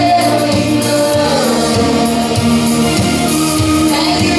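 Live Christian worship song sung by women's voices into microphones, with instrumental accompaniment and a steady drum beat, amplified through the room's speakers.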